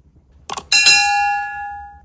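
Subscribe-animation sound effect: a couple of quick mouse-style clicks, then a bright notification-bell ding that rings and fades away over about a second.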